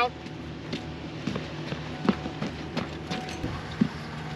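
A few scattered sharp knocks and clicks, about six in four seconds, as a firefighter handles the open cockpit door and gear of a light aircraft, over a steady low hum.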